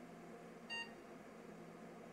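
One short electronic beep from the grandMA2 lighting console, about two-thirds of a second in, as an arrow key is pressed in its startup menu to choose the software to boot. Otherwise faint room tone.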